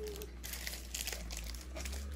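Plastic bead-kit tray being handled, crinkling with a few light clicks over a low steady hum.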